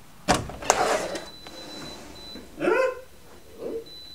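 A door's knob and latch clicking twice as the door is opened, with a short rustle as it swings. A little before the three-second mark comes one brief, pitched, yelp-like cry.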